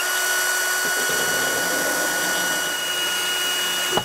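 Cordless drill with a diamond tile bit boring a drainage hole through the base of a porous planter bowl. The motor runs at a steady full speed, a constant high whine over the gritty grinding of the bit cutting the material.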